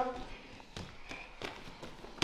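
A few soft thuds of children's feet landing and stepping on a wrestling mat, about a second apart, with faint voices in the background.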